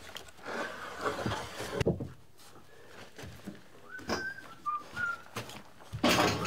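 Timber planks being handled and shifted, with scraping and a sharp knock just before two seconds in. From about four seconds in, a string of short whistled notes at stepping pitches.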